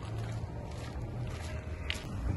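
Steady low rumble and hum, with faint footsteps on hard ground as two people walk.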